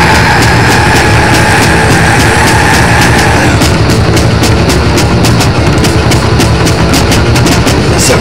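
Loud crossover/extreme metal music with bass and drums: a long held high note stops about three and a half seconds in, and fast, rapid drum hits follow.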